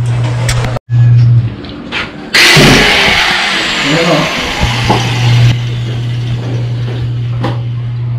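Electric welding machine humming steadily. For about three seconds near the middle a loud hiss of rushing air takes over, and the hum drops out during it. The sound cuts out completely for a moment under a second in.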